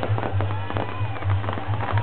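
Fireworks shooting out sparks, with a rapid run of pops and crackles and a few short whistling tones.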